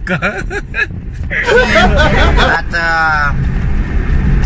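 Low, steady rumble of a car being driven, heard from inside the cabin, growing louder about a second and a half in, under men's voices and laughter.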